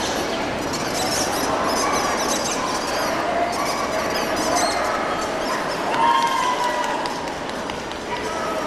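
Dogs barking and yipping over the steady chatter of a crowd in a large hall, with one louder, drawn-out call about six seconds in.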